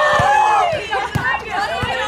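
Several women's voices calling and chattering at once, one loud call right at the start. Three short thuds of a football being kicked come through at even spacing.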